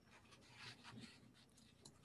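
Near silence, with a few faint scratchy rustles.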